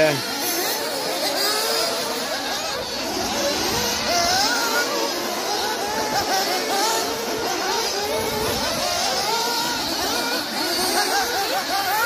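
Several 1/8-scale nitro buggies racing, their small two-stroke glow engines giving overlapping high whines that rise and fall as the cars accelerate and back off around the track.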